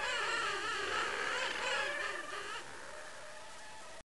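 King penguin colony calling: many overlapping calls that waver up and down in pitch, growing quieter about two and a half seconds in.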